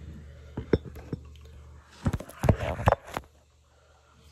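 Hard objects knocking and clinking close to the microphone as things are handled: a few light clicks, then a cluster of louder knocks and clinks about two to three seconds in.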